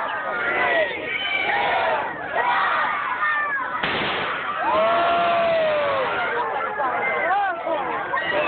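A pumpkin-chunking cannon fires once with a sudden blast nearly four seconds in, followed by the crowd cheering, with one long gliding whoop; crowd chatter runs before the shot.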